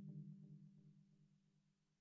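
The last low synthesizer note of an electronic jam, pulsing rapidly and fading away.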